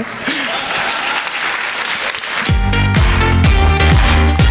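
Applause in a hall, and about two and a half seconds in, loud music with a heavy bass starts abruptly over it.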